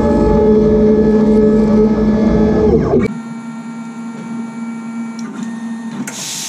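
Stepper motors of a homebuilt CNC plasma table whining in a steady pitched drone as the gantry moves the torch head. About three seconds in it drops suddenly to a quieter, thinner whine.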